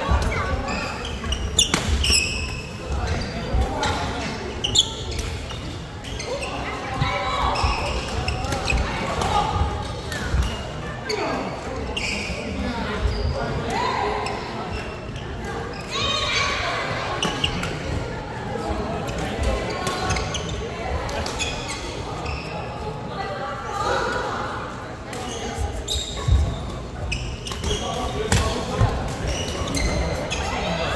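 Badminton play in a large, echoing sports hall: sharp racket strikes on the shuttlecock and footsteps on the wooden court, scattered irregularly through the rallies, over a steady murmur of voices from the surrounding courts.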